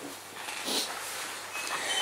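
A quiet pause between spoken sentences: faint, even hiss and room noise with no distinct event.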